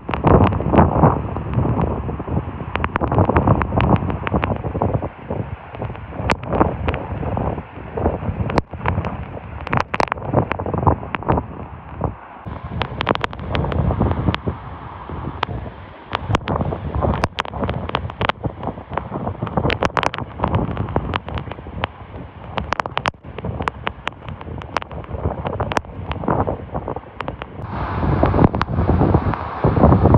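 A heavy waterfall crashing into its pool, with gusts of wind and spray buffeting the microphone and sharp crackles throughout.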